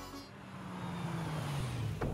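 A car driving up and pulling in. Its engine and tyre noise grows louder, and a low engine hum drops slightly in pitch near the end.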